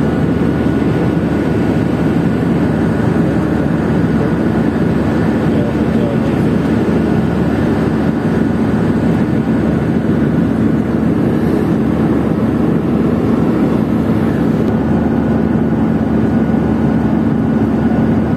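Steady cabin noise of a jet airliner in cruise: a constant low rush of turbofan engine and airflow, with a faint steady hum running through it.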